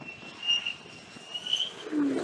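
F-35 fighter's jet engine running with a steady high whine as the jet comes in low over the deck, swelling briefly about half a second in and again near the end.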